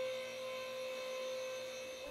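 Electric drive of a vertical platform lift running as the platform rises, a steady hum at one pitch.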